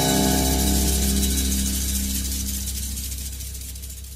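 Final chord of a jazz standard played on a modern gayageum with band accompaniment, ringing on and fading slowly away.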